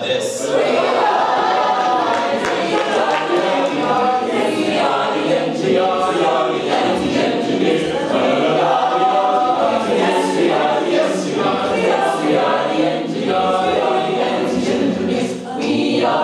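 Mixed-voice a cappella group of men and women singing together in harmony, with no instruments.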